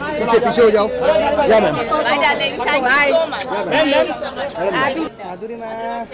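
Loud chatter of several people talking over one another at once. About five seconds in it drops suddenly to quieter talk.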